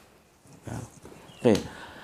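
Mostly low room tone, broken about one and a half seconds in by a single short spoken "okay" that falls in pitch.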